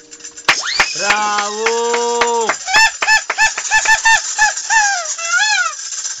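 Rubber chicken toy being squeezed: one long, drawn-out squawk starting about half a second in, then about ten short squawks in quick succession, the last one bending up and down in pitch.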